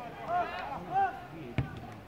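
Shouted calls, with a single sharp thud of a football being kicked about one and a half seconds in.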